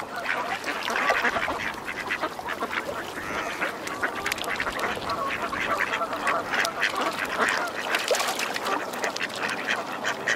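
A flock of waterfowl calling over one another: a dense, unbroken chorus of many short, overlapping calls.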